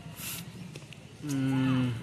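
A cow mooing once: a single short, low, steady call of under a second in the second half.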